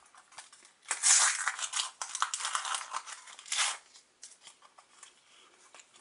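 A Panini sticker packet being torn open, the wrapper crackling and crinkling loudly for about three seconds from a second in, then quieter rustling as the stickers inside are handled.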